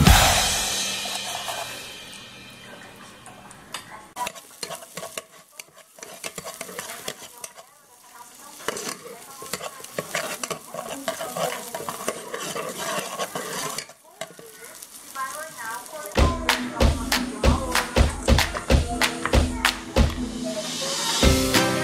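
A spatula stirring and scraping sliced onions frying in fat in a nonstick cooker pot, with irregular scrapes and clicks over a light sizzle. Background music fades out at the start and comes back loudly about four seconds before the end.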